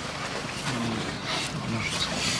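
Men talking indistinctly in low voices, a few murmured words about a second in.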